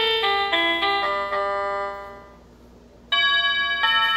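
Wired electronic doorbell chime playing a short tune of stepped notes through its small speaker; the tune fades out about two seconds in. About three seconds in, a two-note ding-dong begins.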